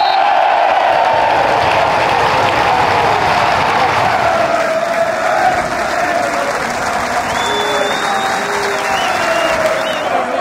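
Football stadium crowd applauding and cheering steadily, with many voices carried along under the clapping; it eases a little in the second half.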